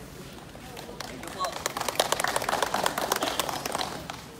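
A group of people applauding. The clapping starts about a second in, builds quickly, and stops just before the end.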